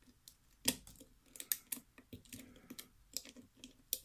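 Faint, irregular metallic clicking of a lock pick working the spring-loaded pins of a Corbin KIK lock cylinder under tension, the sharpest click about three-quarters of a second in.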